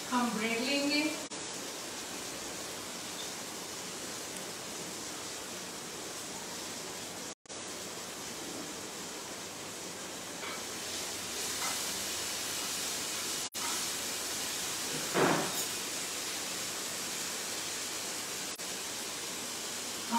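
Steady hiss of marinated paneer sizzling in a frying pan on the gas stove. A short voice-like sound comes about fifteen seconds in.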